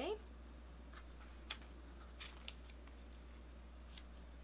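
Paper sticker sheets being handled on a tabletop: a few faint rustles and light taps, spread apart.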